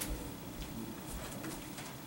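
Quiet classroom room tone in a pause between spoken sentences: a faint, low, steady background hum with no distinct event.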